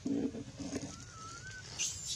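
Bird calls: a low two-part coo like a dove's in the first second, then a thin wavering whistle, with a short high squeak just at the end.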